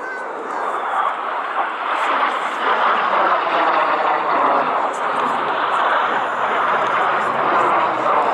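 Aero L-39 Albatros jet trainer's turbofan engine during an aerobatic climb: a rushing jet noise that swells over the first three seconds, then holds steady and loud.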